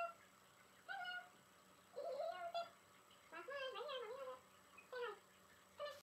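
A dog whining: about six short, high-pitched whines, some rising or falling, with a longer, wavering whine a little past the middle.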